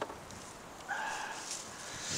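Leafy greens and insect netting rustling as they are handled, with a brief high-pitched whine about halfway through.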